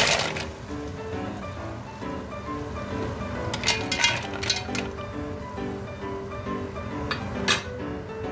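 Mussel shells clattering against each other and a stainless steel pot: a clatter at the start as they are tipped in, then a few clinks as they are stirred about four seconds in and again near the end. Background music plays throughout.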